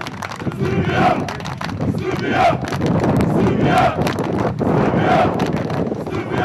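A crowd of Serbian football fans chanting a repeated shouted phrase about once every second and a half, with hand claps.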